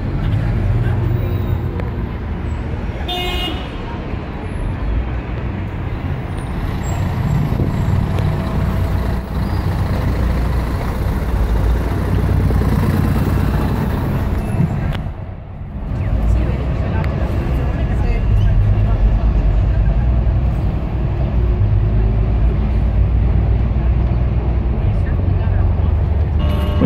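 Street traffic and the rumble of a moving tour bus heard from its upper deck, a steady low noise throughout, with a short vehicle horn toot about three seconds in.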